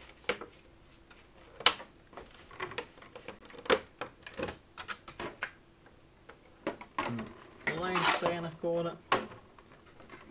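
Stiff clear plastic packaging trays crackling and clicking as they are handled and pried open, a string of irregular sharp clicks. About eight seconds in, a short stretch of a voice.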